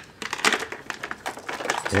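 Hard plastic toy parts clicking and clattering as a toy is handled and hooked onto a baby's activity jumper: a string of short, sharp clicks.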